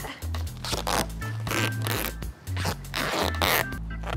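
Background music with a repeating bass line, over which come several short rasps of gaffer tape and cling film being pulled and wrapped around legs.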